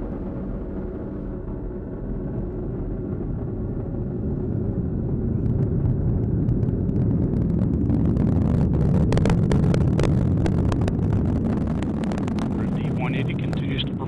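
Atlas V rocket's RD-180 first-stage engine during ascent: a deep rumble with crackling that swells louder in the middle, then eases.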